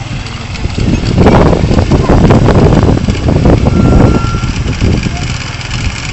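Geely JL150T-3A 150 cc scooter engine idling with a low, steady rumble.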